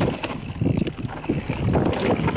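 Specialized Epic Expert mountain bike riding fast down a dirt singletrack: tyres rolling over loose dirt and dry leaves, with irregular knocks and rattles from the bike over bumps and wind buffeting the microphone.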